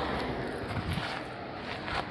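A few soft footsteps, with some faint handling knocks, over a steady background hum and noise.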